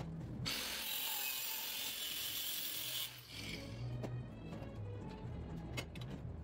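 An angle grinder's abrasive cut-off wheel cutting through steel square tubing for about two and a half seconds, then the wheel winding down, followed by a few light metal clicks.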